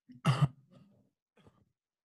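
A person clears their throat once, a short sharp burst about a quarter of a second in, followed by faint small noises.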